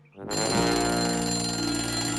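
A bell ringing steadily, starting about a third of a second in after a moment of near silence.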